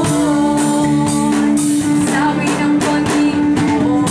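Live band playing a song: drum kit with cymbal hits, electric guitar and a long held tone underneath, with a singer's voice carrying the melody.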